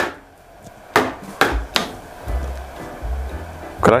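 Wooden drumsticks striking a drum kit: a sharp hit right at the start, then three more hits between one and two seconds in, followed by a low drum resonance lingering in the second half.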